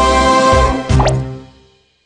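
The last chord of a cartoon theme tune, with a quick rising pop sound effect about a second in; the music then fades out.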